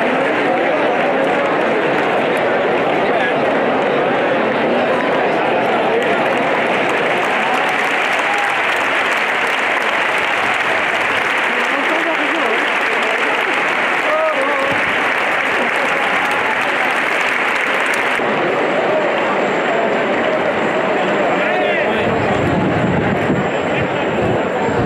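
Bullring crowd: steady applause mixed with the hubbub of many voices.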